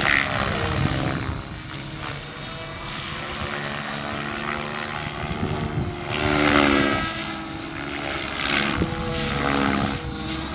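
Radio-controlled model airplane's motor running in flight, with a steady high whine. Its pitch shifts as it passes overhead, and it is loudest about six and a half seconds in.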